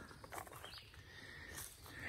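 Faint outdoor background, nearly silent, with a few soft short knocks and rustles.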